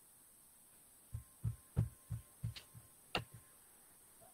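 A quick run of about eight low, dull thumps over two seconds, a few with a sharp click on top, starting about a second in against a faint hum.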